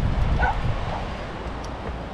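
Wind rumbling on the microphone, with one short distant call about half a second in.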